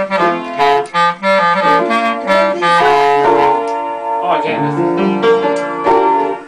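Piano and clarinet playing a tune together, with quickly changing notes.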